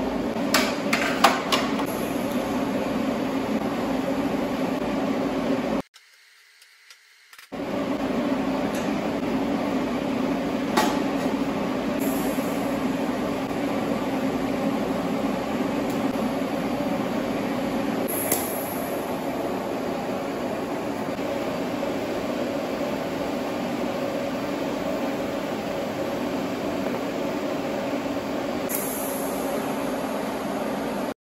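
TIG welding on steel I-beams, with the water-cooled TIG welder running: a steady hum, with a few light clicks in the first couple of seconds. The hum drops out for a moment about six seconds in.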